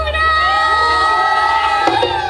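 A singer holds one long, steady high note of a Bihu song while a crowd cheers and shouts over it.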